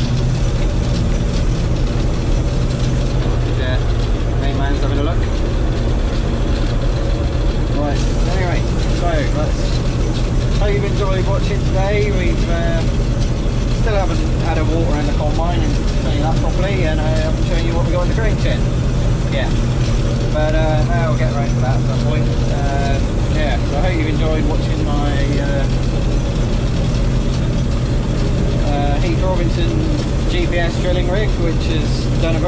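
Combine harvester running steadily, heard from inside the cab as a constant low engine hum.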